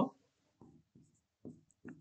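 Marker pen writing on a whiteboard: about four short, faint strokes.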